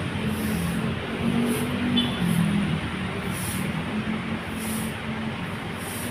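Idling diesel bus engines: a steady rumble with a low, slightly wavering hum, and faint short high hisses every second or so.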